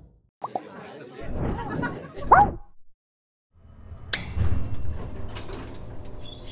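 Short snatches of voices with swooping pitch, a brief silence, then about four seconds in a single bright ding that rings and fades over a low rumble.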